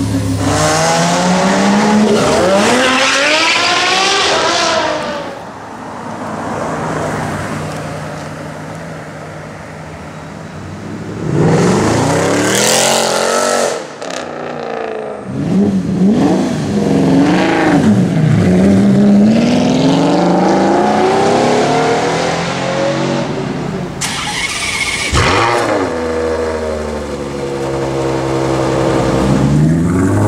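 High-performance supercar engines revving hard and accelerating, in a series of short clips: a Lamborghini Gallardo's V10 and a Ferrari 599 GTO's V12 exhaust notes repeatedly rising and falling in pitch. A sudden sharp crack comes about three-quarters of the way through.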